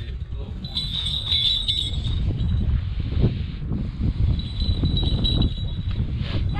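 Wind buffeting the microphone, a continuous low rumble. A thin high ringing comes through it twice, first about a second in and again for the last second and a half.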